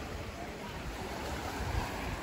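Steady wash of shallow sea water, with an uneven low rumble underneath.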